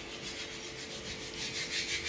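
Faint steady background noise in a room, with a constant low hum and a fast, even flutter over it.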